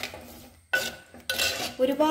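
Steel spoon stirring a pan of pickle, scraping and clinking against the metal pan in three strokes, the later two with a short metallic ring.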